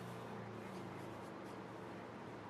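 Faint rustle of paperback pages under a reader's hand, a few soft brushing strokes over a steady low hum of room tone.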